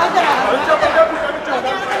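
Several voices talking over one another, too jumbled to make out words.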